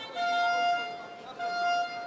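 Two long electronic beeps at one steady pitch, the first lasting about three-quarters of a second and the second about half a second, over arena crowd chatter.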